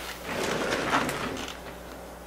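Soft rustling and handling noise from upholstery fabric being pulled and moved around the base of a chair, with a few light knocks; it is loudest in the first half and dies down near the end.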